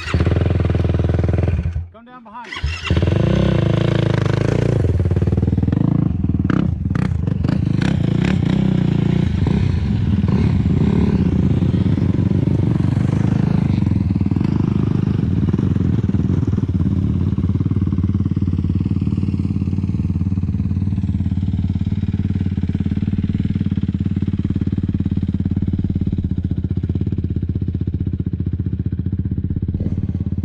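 Sport quad (ATV) engines running. After a brief cut-out about two seconds in, there is a steady engine drone with some changes in pitch in the next few seconds, then an even note.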